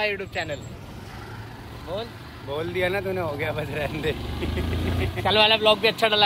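Motorcycle engine running under two riders, a low rumble that swells about four to five seconds in, with voices over it.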